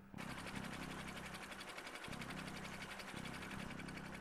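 A machine running steadily with a fast, even clatter over a low hum, the hum breaking off briefly about halfway.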